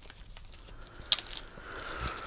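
Small handling noises of plastic toy packaging: a faint rustle, a brief cluster of sharp clicks a little over a second in, then more light rustling.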